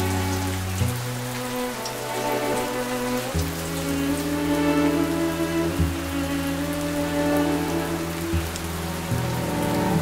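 Steady rain with small drop ticks, under slow ambient music whose long-held low notes change every couple of seconds.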